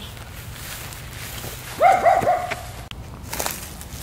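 A small dog gives a short, high whining yelp about two seconds in, then a couple of soft scuffs follow.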